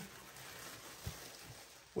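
Quiet room tone with faint handling of the clear plastic wrap over laser-cut plywood kit sheets, and one soft knock about a second in.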